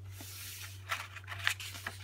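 Pages of a hardcover picture book being turned by hand: a paper rustle in the first second, then a few short crisp clicks of the pages, over a steady low hum.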